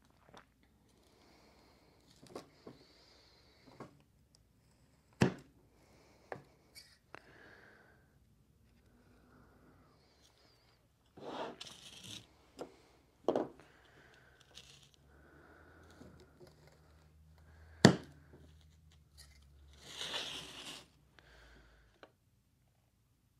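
Handheld metal soil blocker being worked in damp potting mix: faint scraping and crunching as it is pressed into the soil, with a few sharp knocks, three of them louder than the rest.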